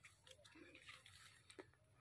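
Near silence: faint outdoor background with a few soft clicks.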